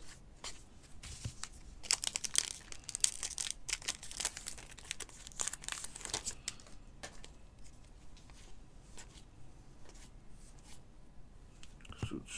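Stiff cardboard baseball trading cards being handled and slid against one another by hand: a run of crisp rustles and clicks, busiest a couple of seconds in and thinning out toward the end.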